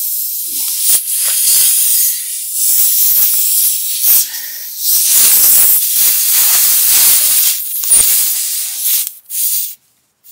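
Air hissing loudly out of a punctured car tire while a tire plug kit's T-handle tool is worked in the screw hole. The hiss surges and dips as the tool moves and stops shortly before the end.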